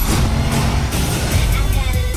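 A car engine running loudly under trailer music, starting abruptly with a sudden jump in loudness.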